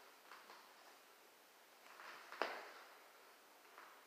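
Near silence: faint exhales from a man curling dumbbells, with one sharp click about two and a half seconds in.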